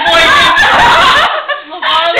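A group of young people laughing and snickering together, loud and overlapping, with a brief lull about one and a half seconds in before the laughter picks up again.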